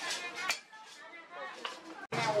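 People talking in the background, unclear and in no words that can be made out, with one sharp metallic knock about a quarter of the way in as the hot steel is worked on the anvil.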